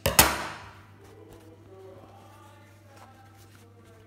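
Steel dressmaking scissors snip once, sharply, just after the start, cutting a marking notch into the edge of cotton fabric. Then there is quiet handling of the fabric.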